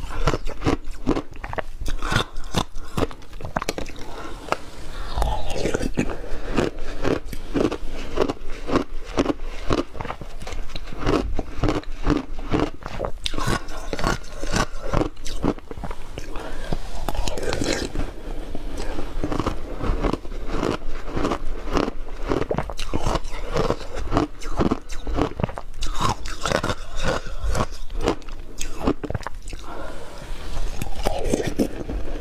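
Close-miked crunching and chewing of ice: a dense, irregular run of crisp crunches as hard ice is bitten and chewed, going on throughout.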